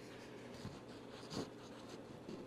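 Faint rustle of a printed paper datasheet being handled, with one short soft scrape of paper a little past halfway.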